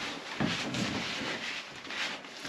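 Rustling and scuffing of clothing, hands and knees against the floor as a person shifts position, starting with a soft knock about half a second in.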